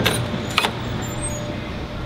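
Metal lever door handle and latch clicking as a door is pushed open, with a second click or knock about half a second in, over a steady low mechanical hum of a large room.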